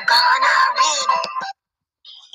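A drawn-out wailing voice that stops abruptly about one and a half seconds in, followed by silence.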